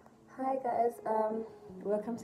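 A woman's voice talking in a lilting, sing-song way, starting about half a second in after a brief silence; a low steady tone of background music comes in near the end.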